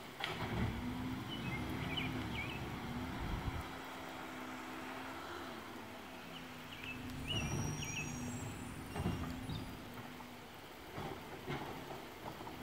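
Garbage truck's diesel engine running at a distance, its pitch rising and falling several times as it works along the street, with a few dull knocks.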